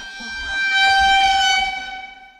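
A single held horn-like tone, used as an edited comic sound effect. It swells in about half a second in, holds one steady pitch, and starts fading near the end.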